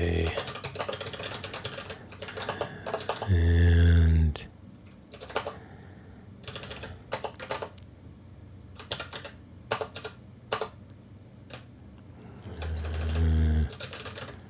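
Typing on a computer keyboard: a quick run of keystrokes in the first few seconds, then scattered single keystrokes. A voice sounds briefly a few times over it, loudest about four seconds in and near the end.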